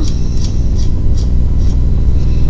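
Steady low rumbling hum in the recording's background, with a few faint short ticks.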